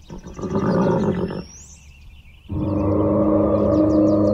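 A loud, noisy sound lasting about a second that cuts off suddenly. About two and a half seconds in, a struck metal instrument starts ringing with several steady tones that carry on. Birds chirp faintly in the background.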